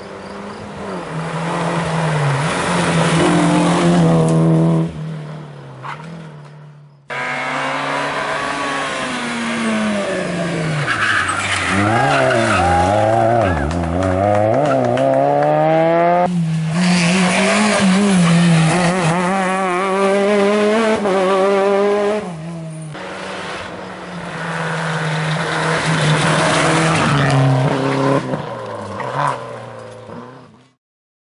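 Rally car engines revving hard through a stage, the pitch climbing under acceleration and dropping at each gear change and lift-off, over several passes joined by abrupt edits.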